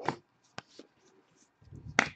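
Foil trading cards flipped one by one through a hand-held stack: short scratchy swishes of card sliding over card, with small clicks. A cluster of rustling ends in the sharpest click near the end.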